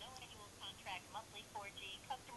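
A voice on the other end of a phone call, faint and thin, coming through the Galaxy Nexus's earpiece.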